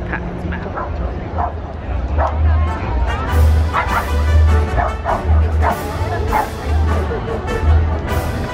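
A dog barking repeatedly in short yaps, about once a second, over music and crowd chatter.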